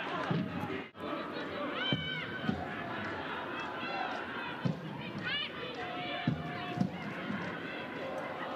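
Sound from the pitch during a football match: shouting voices and a few sharp ball kicks over steady stadium background noise. The sound drops out briefly about a second in.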